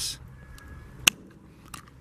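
Tin snips cutting through a strand of coated wire fencing: one sharp snap about a second in, followed by a faint click near the end.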